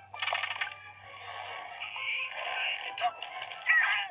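Animated film soundtrack played through a TV speaker: music with sound effects, a short rattling burst just after the start, then a hissing, whooshing stretch rising to its loudest near the end.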